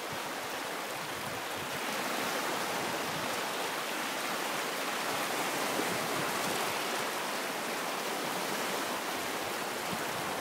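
Small sea waves breaking and washing over the sand at the water's edge, heard close to the microphone as a steady rushing hiss. It gets a little louder about two seconds in.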